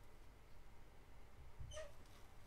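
Near silence of soft handling, with a low bump and then one brief, faint high squeak near the end.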